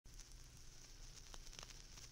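Faint vinyl record surface noise: a low hiss with a few soft clicks and crackles.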